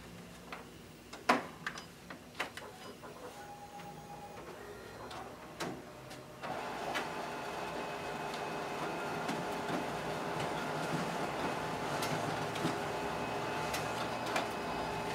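Xerox WorkCentre 7435 colour multifunction copier making two colour copies. First come a few sharp clicks and a short tone. About six seconds in, the machine starts running with a steady whirring mechanical noise that carries on to the end.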